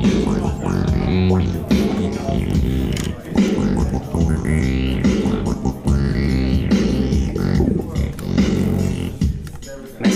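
Yamaha Montage synthesizer playing one of its built-in arpeggio patterns: a dense, rhythmic electronic groove over a steady bass, with repeated rising filter sweeps. It fades down near the end.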